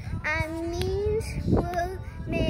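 A young girl singing, holding one long note that slowly rises in pitch, then a short break and a brief higher sung note near the end.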